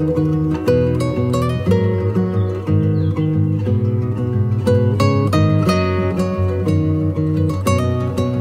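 Background music: an acoustic guitar playing plucked notes and chords.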